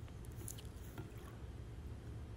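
Faint, steady background noise with a low rumble and one faint tick about half a second in; no distinct sound event.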